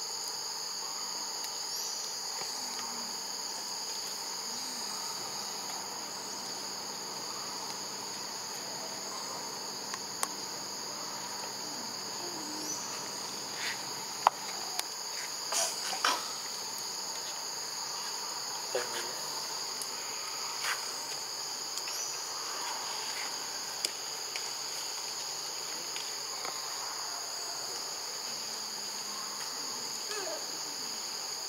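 Steady high-pitched chorus of insects, with a few short sharp clicks and taps scattered through the middle.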